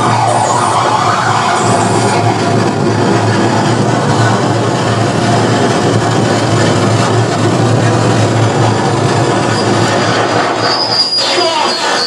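Live harsh noise from an electronic noise rig: a loud, dense wall of distorted noise over a steady low hum. From about ten seconds in, high tones sweep up and down across it.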